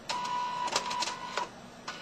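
A small motor whining at one steady pitch for about a second and a half, with a few sharp clicks in its second half.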